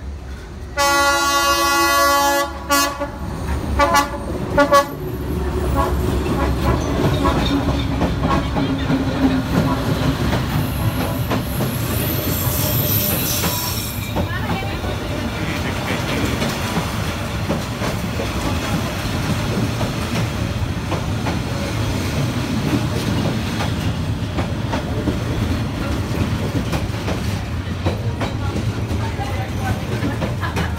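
Diesel train horn sounding one long blast about a second in, then a few short blasts, followed by a Vietnam Railways passenger train rumbling and clattering past at very close range for the rest of the time. A high-pitched wheel squeal rises above it around the middle.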